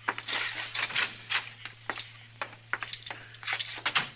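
Radio sound effect of a fire crackling in the office stove, with irregular sharp pops and snaps over a steady low hum from the old recording.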